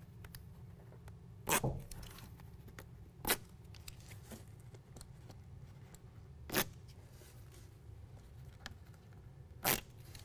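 Four short ripping sounds a few seconds apart, from adhesive protector backing being peeled off hook-and-loop Velcro strips on a carpet bed liner, over a low room hum.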